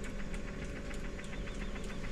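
Bunnell Life Pulse high-frequency jet ventilator running, its pinch valve in the patient box ticking rapidly and evenly about seven times a second, matching its set rate of 420 breaths a minute, over a steady machine hum.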